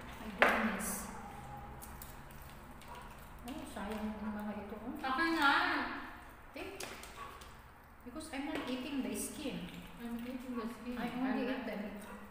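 Talk that the transcript does not catch, in two stretches, with a single sharp clink about half a second in.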